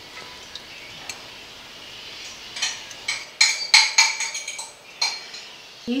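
Beaten egg going into a hot frying pan with a faint steady sizzle, then a quick run of ringing clinks from about two to five seconds in as a metal fork scrapes and taps the last of the egg out of the bowl.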